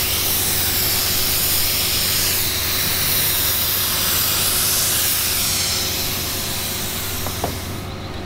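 Compressed-air spray gun hissing steadily as it sprays activator over hydrographic film floating on the dip-tank water, the step that liquefies the film just before the dip. The hiss cuts off at the very end.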